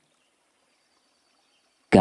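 Near silence in a pause of a man's spoken narration, which starts again right at the end.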